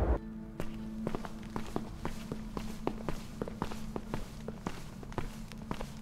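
Footsteps of two people walking on a stone floor, about four steps a second, over a low held music drone.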